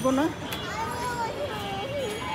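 Children playing outdoors, their high voices calling out over steady outdoor background noise, after a single spoken word at the start.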